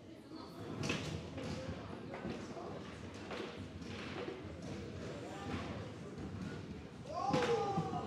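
Foosball play on a Garlando table: the ball knocking against the men and walls, and rods clacking, in a large echoing hall. Near the end a voice calls out loudly.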